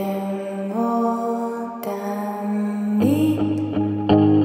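Hebrew-language indie song: a female voice holds long notes, stepping up in pitch about a second in and again near the end.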